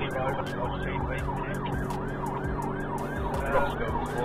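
Police car siren in fast yelp mode, heard from inside the pursuing police car: rapid rising-and-falling sweeps, about four a second, over a steady low hum from the car.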